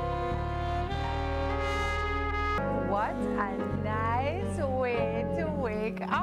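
A live band with saxophone and trumpet over keyboard, electric guitar and bass holds a sustained chord; about two and a half seconds in, the held chord gives way to a voice sliding up and down over the continuing low backing.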